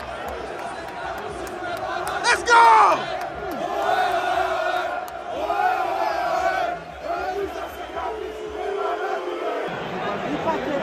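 Large football stadium crowd of ultras chanting together in a sustained, loud mass chant, with one louder shout standing out about two and a half seconds in.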